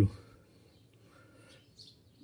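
Near silence after a spoken word trails off, with a faint short high chirp near the end. No engine or machine is running.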